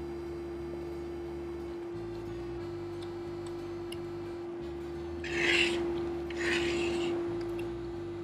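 Two short scrapes of a fork and knife on a plate, about five and six and a half seconds in, over soft background music with a steady held tone.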